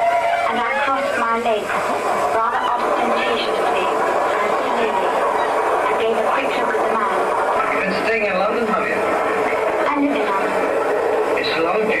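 Recorded train sound effects played over a club sound system, with voices over them.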